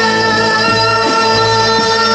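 Live rock band playing electric guitars, keyboard and drum kit, with a chord held steady through the whole moment.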